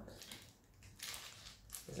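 Faint soft squishing and rustling as fingers pinch and press the folded edges of a pastry parcel together to seal it.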